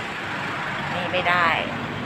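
A woman speaking briefly in Thai about a second in, over a steady background noise with no distinct events.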